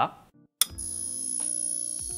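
Logo sting sound effect: a sharp hit about half a second in, then a steady held synth chord with a high ringing tone on top.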